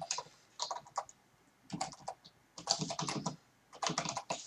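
Typing on a computer keyboard, in several short runs of keystrokes with brief pauses between them.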